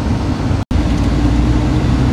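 Car interior noise while driving: a steady low rumble of engine and road noise heard from inside the cabin. It drops out for an instant about two-thirds of a second in, then carries on with a steady low hum.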